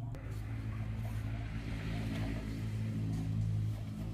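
A motor engine running steadily with a low hum.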